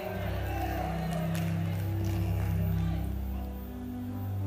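Background music of soft, sustained low chords that shift slowly, with no preaching over them.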